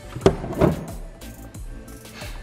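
A sharp plastic knock, then a second softer, crunchier knock, as the blender jar and its blade assembly are handled with the chopped Orbeez and slime slush spilling out. Background music plays throughout.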